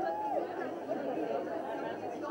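Background chatter of several people talking at once, no single voice standing out.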